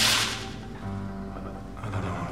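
A photograph ripped in one quick tear, a sudden sharp rasp that fades within about half a second, over sustained, low, dark film-score music.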